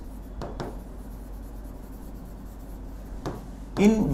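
Pen stylus rubbing and scratching across the glass of an interactive display while writing a line of text, with a low steady hum underneath.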